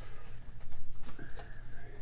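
Fingers picking at and peeling a stubborn plastic wrapper: light crinkling and scattered small clicks, with a brief faint rise-and-fall tone past the middle.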